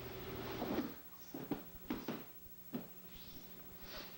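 A handful of sharp thumps and slaps on the training mat as an aikido partner is thrown down in a takedown, clustered between about one and three seconds in, over a faint steady hum.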